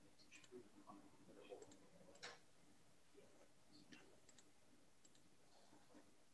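Near silence: faint room tone with a few scattered soft clicks and taps.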